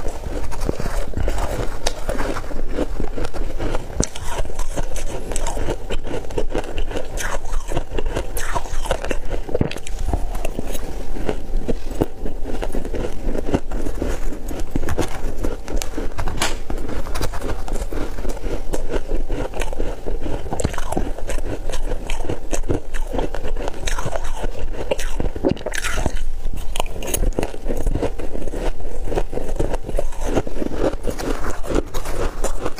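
A person biting and chewing ice close to the microphone: dense, unbroken crunching with no pauses.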